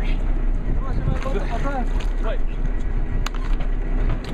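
A boat's engine runs steadily under wind and water noise, while voices call out in drawn-out, rising-and-falling shouts about a second in.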